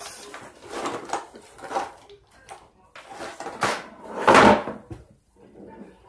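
Rummaging through objects: a string of knocks, clatters and rustles as things are moved and picked up, with the loudest, longest rustling clatter about four seconds in.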